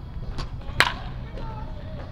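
A baseball bat hitting a pitched ball during batting practice: one sharp crack a little under a second in, with a fainter tap shortly before it.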